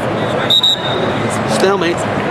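A wrestling referee's whistle blown once, a short, high blast about half a second in, over the steady noise of a gym crowd.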